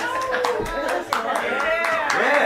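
Scattered hand clapping from a few people, with laughter and voices over it, just after a song has ended.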